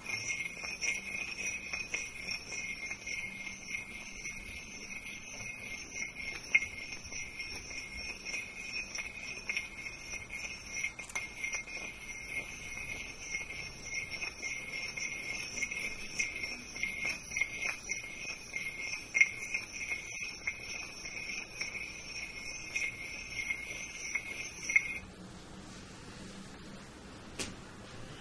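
A steady high ringing tone that holds unchanged for about twenty-five seconds and cuts off suddenly near the end. Soft, scattered light taps and rustles sit over it.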